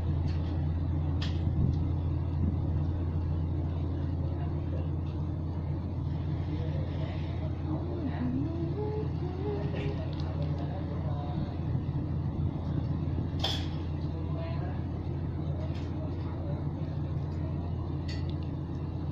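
Steady low hum of a running electric fan, with a few short sharp crackles of a plastic sauce bag being handled, the loudest about three-quarters of the way through.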